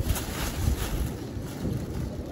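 Wind buffeting the phone's microphone, an uneven low rumble, with brief crinkling of a plastic bag near the start as flatbread is handled on it.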